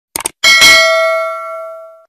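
A short mouse-click sound effect, then a bright bell ding that rings out and fades over about a second and a half: a notification-bell sound effect.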